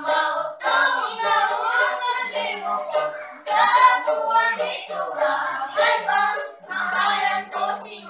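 A child singing in a high voice to the strumming of a small wooden guitar, other children's voices joining in at times.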